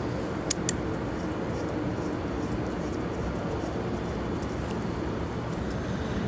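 Two small clicks of the inclinometer probe's threaded metal connector being screwed onto the cable, about half a second in, over a steady low background hum.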